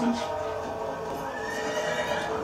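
Horses on a TV drama soundtrack: a horse whinnies and hooves clop, over a sustained music score.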